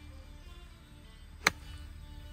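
A golf club striking a ball off grass: one sharp click about one and a half seconds in, over soft background music.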